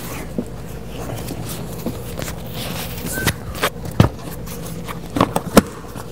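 Hands fitting a plastic interior trim piece beside a car's rear seat: scattered clicks and knocks, the loudest about four seconds in, over a steady low hum.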